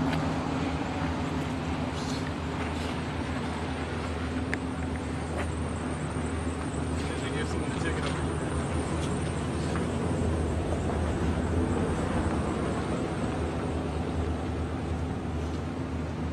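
Street traffic noise: a steady low engine hum of idling and passing vehicles under a constant haze of road noise.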